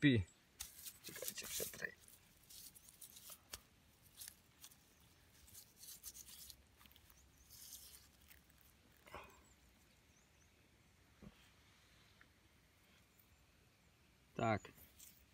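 Faint crackling and rustling of damp soil and grass as dirt is rubbed off a freshly dug coin by hand and a digging tool works the turf. The denser crackling comes in the first two seconds, with only scattered soft clicks later.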